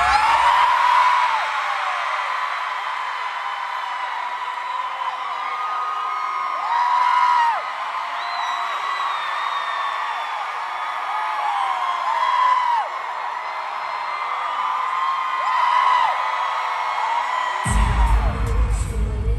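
Live arena pop concert heard through a phone microphone: a sung melody with the crowd singing and whooping along, the music thinned to its upper parts with the bass dropped out. The full low end comes back just before the end.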